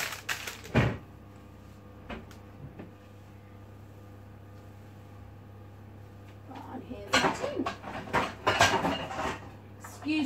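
A cluttered kitchen cupboard being rummaged through, its contents clattering and jangling over the last three or so seconds. Near the start there are a couple of sharp knocks, and a faint steady hum runs underneath.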